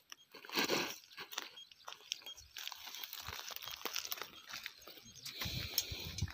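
Footsteps crunching through dry grass and straw stubble, with irregular crackles throughout and heavier steps just under a second in and near the end.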